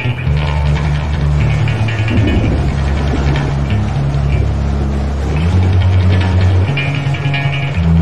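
Metal band recording with guitars and bass guitar playing; the low notes shift in steps about every second.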